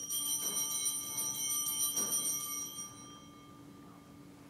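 A small metal object struck and ringing with a high, bell-like tone, lightly struck again about half a second and two seconds in, dying away after about three seconds.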